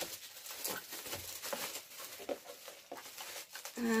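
Bubble wrap rustling and crackling as it is handled and pulled off a boxed vinyl figure, with many small irregular crackles.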